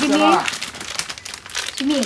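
Plastic wrapping crinkling as it is pulled off a small children's whiteboard, a second or so of dense crackling between bits of high-pitched talk.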